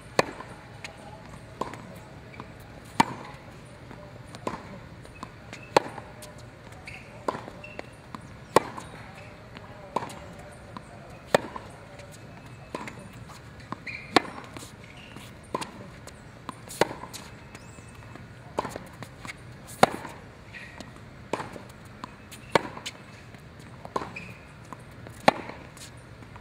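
Tennis rally: balls struck back and forth with racket strings, a hit about every second and a half, with ball bounces on the hard court in between. The loudest strikes come about every three seconds from the near player, and the partner's hits across the net are fainter.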